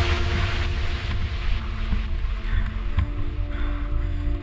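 Wind on a helmet camera's microphone and the rumble of a mountain bike rolling fast over a dirt singletrack, with a sharp knock about three seconds in, over faint electronic music.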